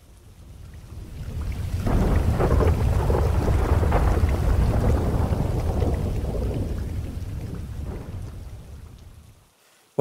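A long roll of thunder over rain: the deep rumble swells up over the first two seconds, holds, then dies away before the end.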